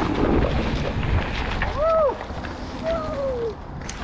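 Wind buffeting a helmet-camera microphone and mountain bike tyres rolling over a leaf-covered dirt trail while riding downhill, a steady low rumble with a sharp click right at the end.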